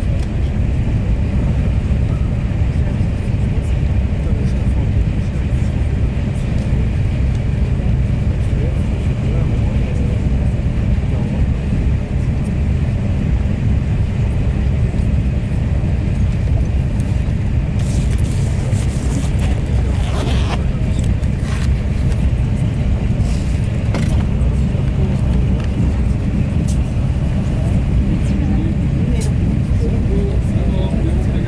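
Steady low rumble of a Thalys TGV high-speed train running at speed, heard from inside the passenger car. A few light clicks and short rattles come a little past halfway.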